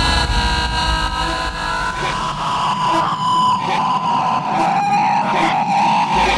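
Hardstyle remix in a breakdown without the kick drum: held synth tones over a noisy synth wash. The deep bass drops out about a second in.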